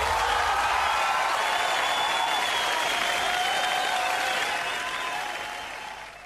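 Crowd applause, steady, then fading away near the end.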